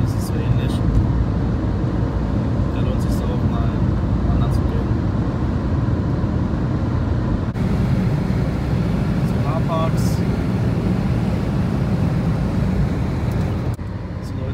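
Steady road and engine noise heard inside a car cabin at motorway speed: a constant low rumble of tyres and running engine.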